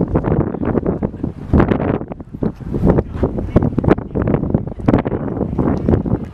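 Wind buffeting a camcorder's microphone: a loud, gusty rumble with irregular crackling.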